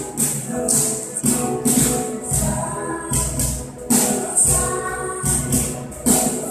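A children's choir sings a praise song, backed by acoustic guitar and jingling percussion that keeps a steady beat.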